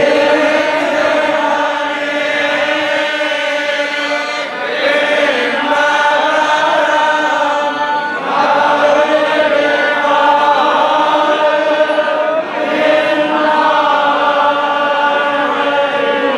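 A group of men chanting together in unison, the recitation of the devotees walking with the deity in a temple procession. The chant goes in held phrases of a few seconds each, with brief breaks for breath between them.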